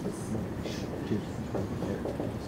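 A marker writing on a whiteboard in a few short, faint strokes over a steady low rumble of room noise.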